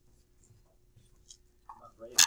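Near silence: classroom room tone with a steady faint hum and a few faint light ticks, and a slightly louder short sound starting near the end.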